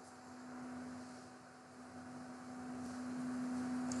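A faint steady low hum under a light hiss, with no other sound.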